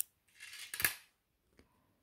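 Scissors snipping cross-stitch threads to unpick mistaken stitches: a sharp snip at the start, a short rustle of thread ending in a second snip just before a second in, then a faint tick.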